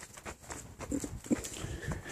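Dogs barking in the distance, a few short barks, over irregular footsteps on a concrete walkway.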